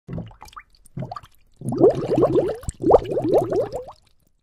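Cartoon bubbling sound effect: two short blips, then two quick runs of rising, watery bloops, about six or seven a second, that stop suddenly.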